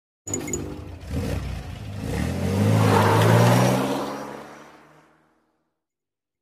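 Car engine revving, a sound effect: the engine note climbs in pitch and swells to its loudest about three seconds in, then fades away by about five seconds.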